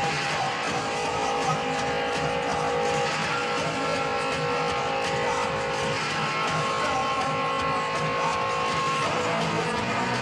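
Punk band playing live, with electric guitar chords strummed and held, the chord changing every few seconds over a dense, steady wall of sound.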